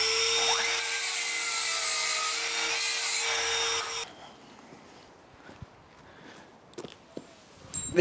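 Electric mitre saw running at a steady pitch and cutting through a length of timber. It stops abruptly about halfway through, leaving faint outdoor quiet with a few light knocks.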